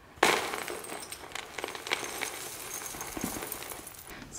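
Chunks of horticultural charcoal poured from a plastic container into a tub of potting mix. A loud start about a quarter second in, then a long rattling, clinking trickle of small pieces.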